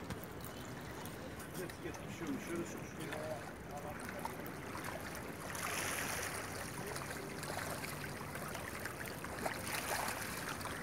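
A hooked bluefish splashing at the surface of the sea as it is played in close to the rocks, the splashing louder a little past halfway.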